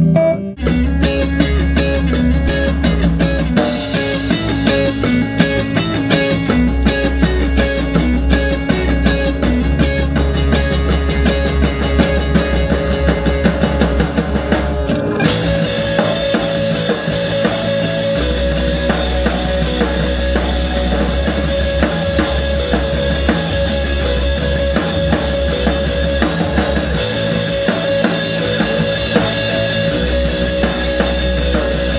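Rock band playing a full take in the studio: drum kit and electric guitar together with a steady groove, starting about half a second in.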